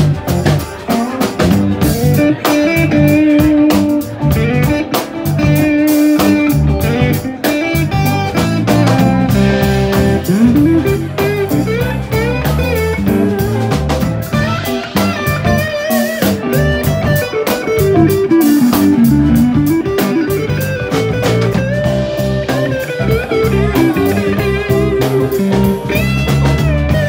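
Live instrumental blues-rock jam: electric guitar playing a lead line with many bent, sliding notes over electric bass and a drum kit.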